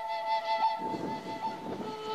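Native American flute holding a high note with quick flicks to a neighbouring note, fading a little under a second in. A low rushing noise of wind on the microphone takes over in the second half.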